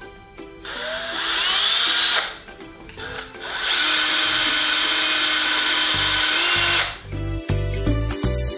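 Cordless drill motor running in two bursts: a short one of about a second and a half with a rising whine as it spins up, then a longer steady run of about three seconds that cuts off suddenly. Background music with a steady beat comes in near the end.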